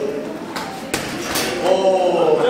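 A few quick thuds of bare feet on a foam floor mat as a man runs in and leaps into a flying kick. A short voice follows near the end.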